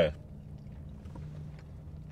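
Steady low hum inside a car's cabin, with a few faint ticks.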